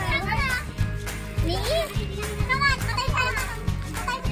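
Young children's high voices chattering and exclaiming, with background music playing and wrapping paper being torn and rustled.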